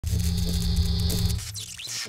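Electronic glitch noise like a bad analogue TV signal: a loud buzzing hum with hiss that cuts off about one and a half seconds in, followed by a brief sweeping tone.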